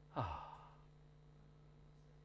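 A man's short breathy "oh", falling in pitch, about a quarter of a second in. Then near silence with a faint steady hum.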